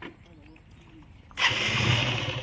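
An engine starts suddenly a little over halfway through and keeps running steadily with a low hum.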